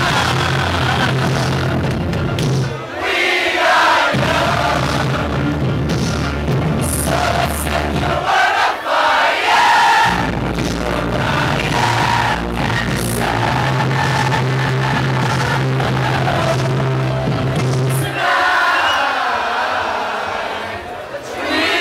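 Electronic dance music from a DJ set playing loud over a club sound system, with the crowd shouting and singing along. The bass drops out briefly about three seconds in and again about eight seconds in, then cuts out once more near the end.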